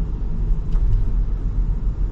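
Steady low rumble of a moving car's engine and tyres, heard from inside the cabin.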